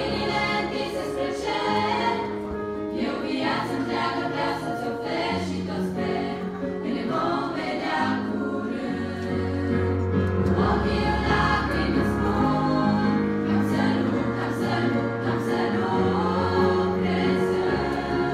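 A girls' choir singing a Christian hymn in Romanian-church style, with keyboard or piano accompaniment holding sustained bass notes under the voices.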